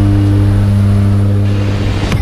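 Steady low drone of a propeller jump plane's engine heard from inside the cabin during the climb, with a constant pitch; it fades out just before the end.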